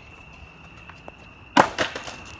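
Skateboard hitting the pavement during a trick attempt: a loud sharp crack about one and a half seconds in, then two or three smaller knocks as the board clatters and settles.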